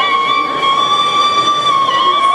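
Bamboo flute holding one long, steady high note, moving to a new note near the end, as part of a Carnatic dance accompaniment.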